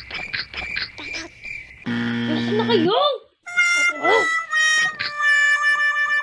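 Cartoon-style sound effects. A low buzzer sounds for about a second, then several springy boing sounds swoop up and down over a steady held electronic tone.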